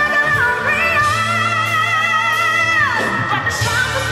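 Female singer belting over a live band: her voice climbs into a long high note held with vibrato, then slides down near the end.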